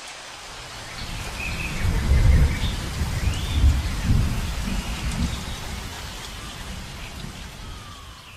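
Rain falling steadily, with a low roll of thunder that swells to its loudest a couple of seconds in and then slowly fades away.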